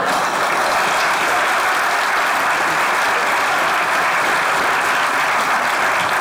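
Live theatre audience applauding, a steady, even round of clapping that lasts throughout.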